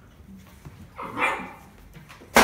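One short dog bark about a second in.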